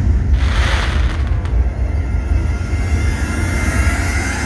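Show fireworks going off, with a hissing crackle about half a second in and a sharp bang about a second and a half in, over a loud, deep rumble.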